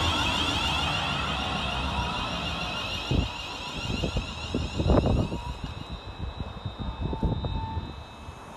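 Class 350 Siemens Desiro electric multiple unit pulling away, its running noise and high motor whine fading as it draws off. Wind buffets the microphone in gusts from about three seconds in.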